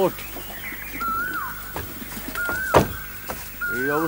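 A bird's short whistled call, rising then falling, repeated about every second and a half. A single sharp knock comes about three quarters of the way through.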